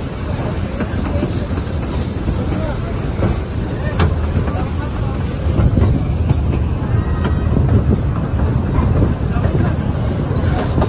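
Narrow-gauge steam train running over a wooden trestle bridge, heard from an open-sided carriage: a steady rumble of wheels and carriages with scattered light clicks from the track, and one sharp click about four seconds in.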